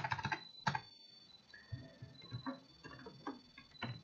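Computer keyboard being typed on: a quick flurry of key clicks at the start, then scattered single keystrokes.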